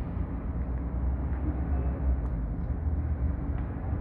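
Steady low rumble of background noise, with no distinct clicks or knocks.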